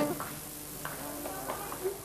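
Sung music stops, leaving a quieter stretch with a voice and a few light knocks.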